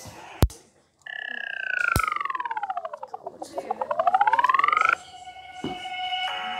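Electronic sound effect: two sharp hits, then a pulsing synthetic tone that slides down in pitch over about two seconds and back up again. It cuts off abruptly about five seconds in, where music starts.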